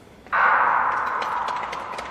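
Starting gun for a speed skating race, followed at once by spectators bursting into cheering that slowly fades.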